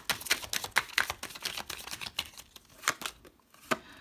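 Tarot cards being shuffled by hand: a quick run of light card flicks and slaps that stops about three seconds in, followed by one more flick near the end.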